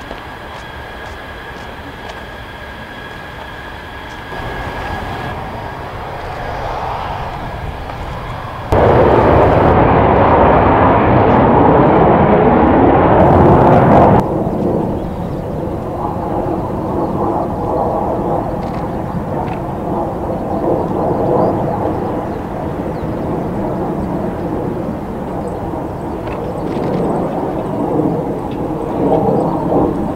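Jet aircraft engines running on the airfield: a steady whine at first, then a much louder stretch of jet noise with shifting pitch about nine seconds in lasting some five seconds, then a steady engine drone holding several tones.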